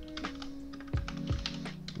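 Computer keyboard typing: several quick, irregular keystrokes as a short command is entered. Background music plays underneath.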